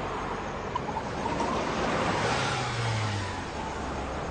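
A car driving along a street, its engine and tyre noise swelling about halfway through and then easing off.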